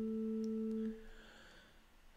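A held keyboard note with a pure, steady tone that stops about a second in. It sounds the starting pitch for a chanted Gregorian antiphon.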